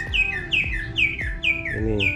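A bird chirping a quick, even run of about five high, falling notes, each followed by a lower one, over background music with a steady beat.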